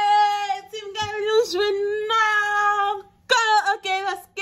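A woman singing in a high voice, holding long drawn-out notes with short breaks, then a few quicker, wavering notes after a brief pause about three seconds in.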